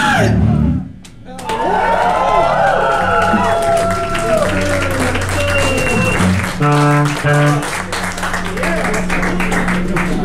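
A loud rock band stops abruptly about a second in. Electric guitar feedback and effects noise then hang on, wavering and gliding in pitch, while the crowd cheers. Two short, steady instrument notes sound a little past halfway.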